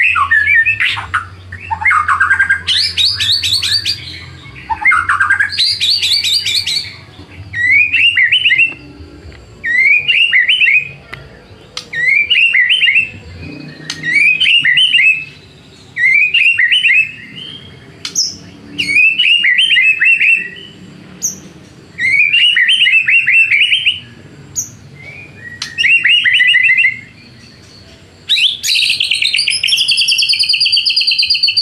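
White-rumped shama (murai batu) singing. It opens with varied whistled phrases, then repeats one short whistled phrase about every one and a half seconds, and ends with a louder, fuller phrase near the end. A low hum runs under the first few seconds.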